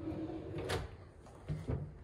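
A cabinet drawer is pushed shut with a dull thump about one and a half seconds in, after a short click.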